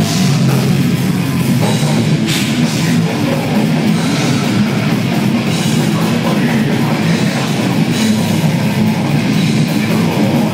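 Death metal band playing live at full volume: distorted electric guitars, bass and drum kit in a dense, unbroken wall of sound.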